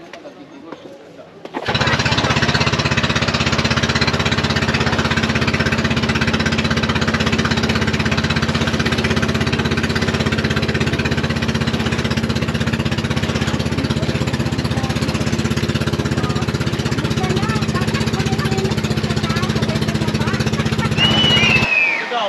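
Small boat's engine running steadily at speed, a loud, rattling drone. It cuts in about two seconds in and cuts off abruptly just before the end.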